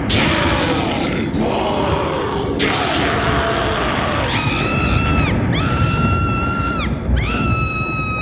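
Sound-effects intro to a death metal album: a dense low roar throughout, with three long high screams from about halfway, each rising, holding a steady pitch and then dropping off.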